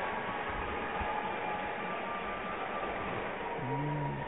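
Steady hiss of ice-rink room noise heard from the stands, with a faint steady hum and a short low pitched sound near the end.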